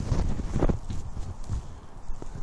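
Gloved hands working loose soil around a tree's root ball in a planting hole: irregular soft thumps and scuffing, a little sharper in the first second.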